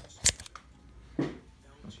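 A single sharp click about a quarter second in, then a softer knock about a second later.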